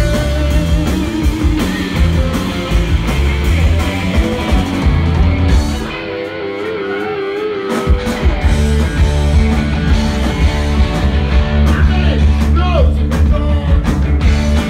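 A live rock band plays a guitar-led passage, with electric guitar over bass and drums. About six seconds in, the bass and drums drop out for under two seconds, leaving a held, wavering guitar note on its own, and then the full band crashes back in.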